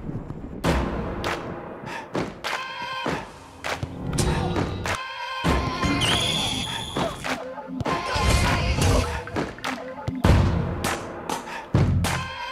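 Background music over a series of hard thuds: a football being kicked and striking players.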